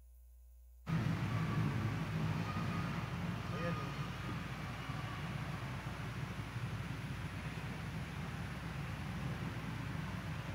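Live sound of a large church cutting in suddenly about a second in: a steady low rumble of room noise with faint, indistinct voices of the waiting congregation.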